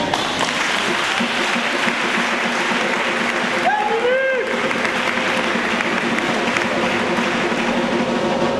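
Church congregation applauding steadily, with a voice calling out briefly about four seconds in.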